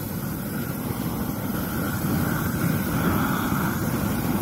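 GrillGun high-power propane torch running with its flame lit: a continuous, steady, low rushing noise.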